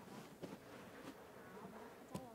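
Near silence: a faint steady hum, with a few light knocks and squeaks as a cardboard box prop is handled and set down on another box.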